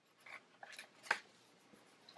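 Faint rustling of paper and sticker sheets being handled, with a light tap about a second in.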